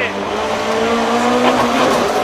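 Rally car engine heard from inside the cockpit, revving up steadily in second gear, then dropping in pitch near the end as the driver shifts up to third.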